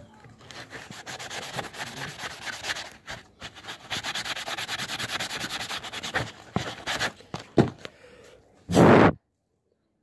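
Dry, rough side of an old sponge scrubbed fast back and forth over a plastic fairing piece to clean it: a scratchy rubbing that runs for about six seconds. A few scattered knocks follow, then a brief loud thump near the end, after which the sound cuts off abruptly.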